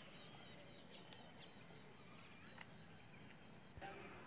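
Faint insect chirping outdoors: a steady run of high chirps, several a second, with a few soft clicks.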